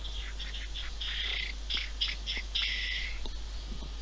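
Bird chirping: a quick string of short, high chirps lasting about three seconds.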